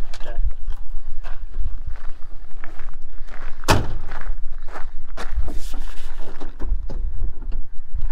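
Footsteps on gravel, then the driver's door of a 1990s Ford service truck slams shut about four seconds in, the loudest sound.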